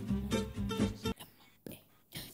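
Guitar music with a soft voice over it, cutting off suddenly about a second in, then near silence.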